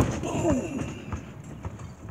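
Basketball bouncing on an asphalt driveway, a few separate thuds, with a short falling vocal sound about half a second in.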